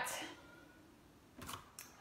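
Two short, soft clicks near the end as a paper plate is picked up and handled, over faint room tone.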